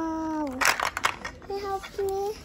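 A toddler vocalising: a long held "aah" that falls slightly as it ends, then two shorter, higher calls about a second and a half in and at the end. A brief rustle or crackle of the packaging in her hands comes between them.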